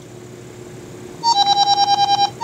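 Short electronic jingle from a smartphone speaker, starting about a second in: a brief higher note, then a quick run of repeated lower beeps, a short gap, and a second higher note and run. It is the Wake Voice alarm app's sound as the alarm is stopped.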